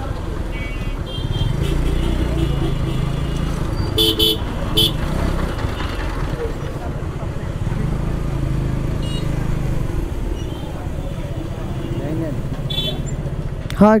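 Motorcycle engine running at low speed in busy street traffic, with a vehicle horn tooting twice in quick succession about four seconds in and a few fainter short horn beeps elsewhere.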